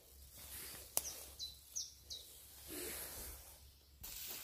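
Faint outdoor ambience with a single sharp click about a second in, followed by four short, high bird chirps in quick succession, and a soft rustle near the end.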